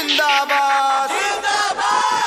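Bhojpuri DJ remix track: a loud shouted vocal sample, like a crowd chant, holds one note for about a second, then gives way to bending sung voices over a low bass hum.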